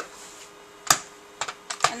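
A few short, sharp plastic clicks of a micropipette being worked while loading DNA samples into a gel, the loudest about a second in.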